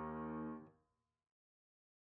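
Software piano chord from a virtual instrument, several notes sounding together and fading, cut off about two-thirds of a second in.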